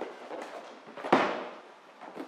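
Cardboard product boxes set down on a sheet-metal bench top: one sharp knock about a second in that echoes briefly, with a few lighter taps before it.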